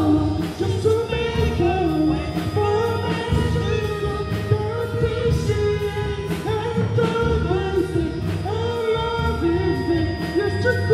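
Live band music with a steady beat, keyboards and sung vocals.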